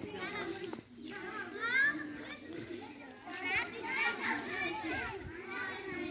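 A crowd of children's voices chattering and calling out at once, many overlapping, with louder high-pitched calls about two seconds and four seconds in.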